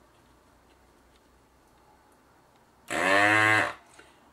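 SC7000 electric desoldering gun's vacuum pump buzzing loudly in one burst of just under a second, about three seconds in, rising briefly in pitch as it starts, as it sucks molten solder off a capacitor joint.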